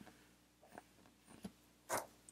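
A few faint, short clicks and taps of hand handling as a cigarette lighter is picked up, the loudest one near the end.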